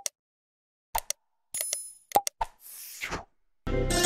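Sound effects of a subscribe-button animation: a few short clicks and pops, a ringing bell-like chime about a second and a half in, and a soft whoosh near three seconds. Music starts just before the end.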